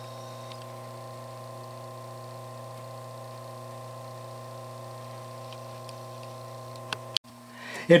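Steady hum of a small electric motor turning a Retrol model beam engine that is not under steam. The hum cuts off suddenly about seven seconds in.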